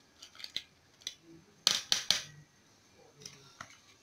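Light clicks and clinks of kitchenware as dried cloves are tipped into a pot of boiling zobo, with a quick cluster of sharper clicks a little before halfway.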